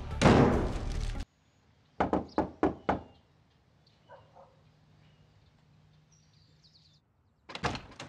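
A loud noisy swell cuts off abruptly about a second in. Then four sharp knocks on a wooden front door, followed near the end by a clunk as the door is unlatched and pulled open.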